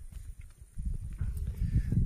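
Low, irregular rumbling and knocks on the microphone, growing louder through the second half.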